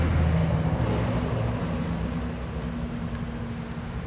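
Steady low rumble of road traffic, slowly fading, with a few faint small clicks.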